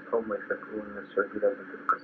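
Speech only: a voice talking on a muffled, narrow-band recording, with a steady low hum underneath.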